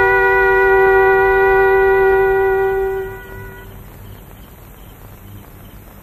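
Background film score: a single long, steady, held note with a reedy wind-instrument tone, fading out about three seconds in and leaving only faint hiss.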